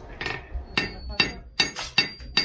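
Blacksmith's hammer striking hot iron on an anvil: a quick run of about five blows, each with a short metallic ring.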